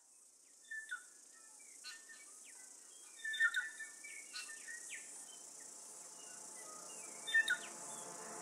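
Forest ambience fading in: a steady high insect drone with scattered short bird chirps, loudest a few seconds in and near the end, getting slowly louder.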